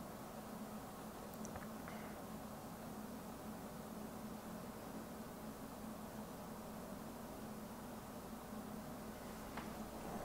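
Quiet room tone: a faint steady hiss with a low hum underneath, and no distinct sound events.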